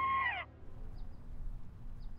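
A high, held pitched tone with overtones slides down in pitch and cuts off about half a second in, followed by a faint low hum with a few short faint chirps.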